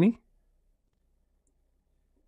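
Near silence after a spoken word trails off, with one faint tick about one and a half seconds in.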